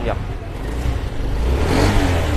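Honda SH scooter's single-cylinder engine running, then revved with the throttle in the second half, the engine noise swelling.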